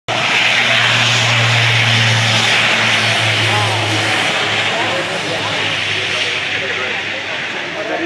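Airbus A400M's four Europrop TP400 turboprops at takeoff power: a loud steady drone with a deep propeller hum under a broad rushing noise. The deep hum dies away about halfway through and the rush slowly fades as the aircraft draws away.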